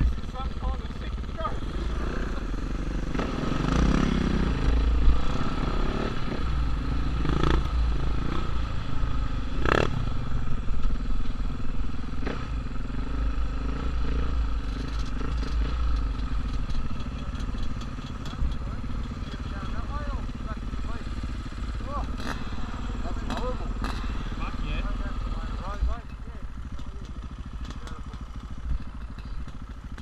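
Several dirt bike engines idling together at a standstill, a steady running hum, with a sharp knock about ten seconds in.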